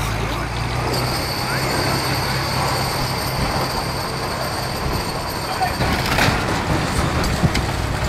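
Heavy wheel loader's diesel engine running steadily as its chained tyre climbs onto a car, with sharp cracks of the car body giving way a little after six and again after seven seconds in.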